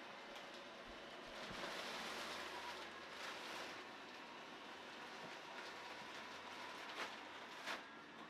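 Built-in blower fan of a Gemmy airblown inflatable running with a steady rush of air and a low hum, the nylon fabric rustling as the figure fills and is lifted upright. Two sharp taps near the end.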